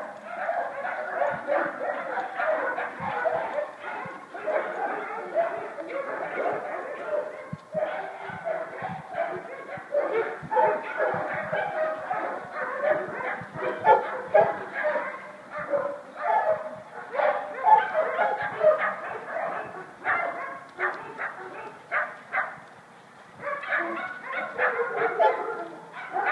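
Dogs barking over and over with hardly a break, easing off briefly near the end.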